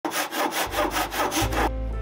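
Handsaw cutting through a thin strip of wood in quick back-and-forth strokes, about five a second, stopping abruptly near the end.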